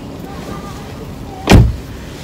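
Car door slammed shut, heard from inside the cabin: a single heavy thump about one and a half seconds in.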